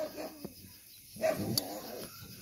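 Faint, short dog sounds from a German Shepherd close to the microphone, the loudest a brief low sound just over a second in, with a light click after it.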